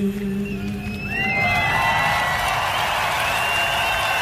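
The band's last held note rings out and stops about a second and a half in. Then the large festival crowd cheers and whistles at the end of the song.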